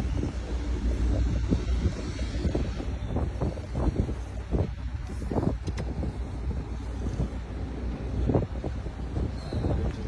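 Steady low wind rumble buffeting the microphone out on open water, with faint scattered splashes or knocks.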